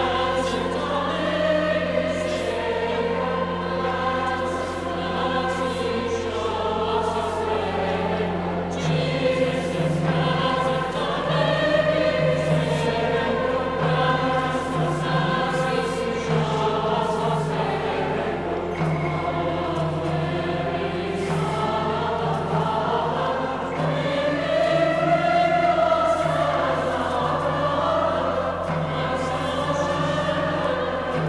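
Massed youth choirs singing a hymn together, many voices in unison and harmony, over sustained low notes from organ accompaniment, in a large reverberant basilica.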